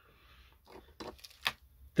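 Quiet room tone with a few light clicks and taps of tools being handled on a workbench, the loudest about a second and a half in.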